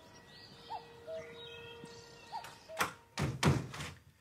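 Horror-trailer sound design: a quiet stretch with faint short chirps over a thin held tone, then two loud impact hits about three seconds in, the second longer, with a smeared rush.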